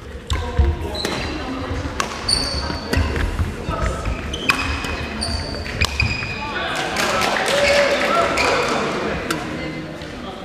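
Badminton doubles rally: sharp racket strikes on the shuttlecock every second or so, short high squeaks of court shoes and thudding footfalls on the sprung wooden floor. Voices rise in the second half as the rally ends.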